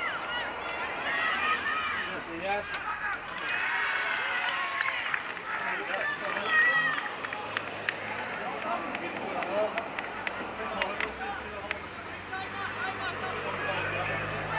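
Several voices shouting and calling at once across a rugby league field during open play, with scattered sharp clicks. A low steady hum comes in near the end.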